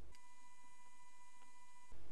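A steady electronic beep at one pitch, lasting about a second and a half and cutting off suddenly.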